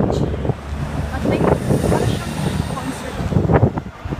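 Wind rumbling on a handheld phone microphone over passing road traffic, with a bus going by close near the end. Snatches of voices come through in between.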